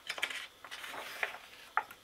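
A page of a hardcover picture book turned by hand: a brief paper rustle and swish, with a short sharp snap near the end as the page lands.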